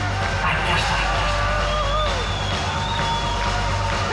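Live rock band playing through the club PA, with long held notes over a steady low drone.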